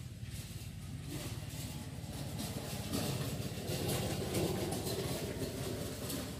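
Rice combine harvester engine running steadily, growing somewhat louder about halfway through.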